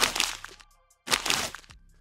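Two paper-ripping sound effects, each about half a second long, the first at the start and the second about a second in. Under them runs electronic outro music with a deep kick drum.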